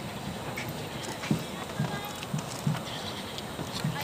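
A steady series of low thuds, about two a second, over a background murmur of voices.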